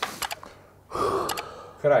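A man gasping and blowing out hard from the burn of very hot chili relish: a short breath at the start and a longer, heavier breath about a second in.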